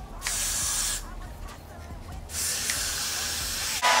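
Got2b Freeze aerosol hairspray hissing in two bursts, a short one and then a longer one, as it is sprayed onto a section of hair. A hair dryer switches on just before the end, louder than the spray.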